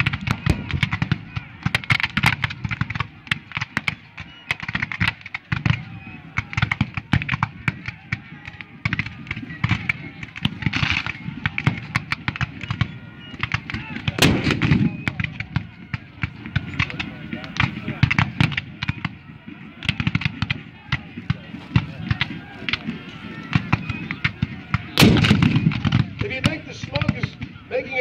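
Continuous crackle of blank-firing musket volleys from infantry lines across the field, with a reenactment field cannon firing close by: two heavy booms, one about halfway and one near the end.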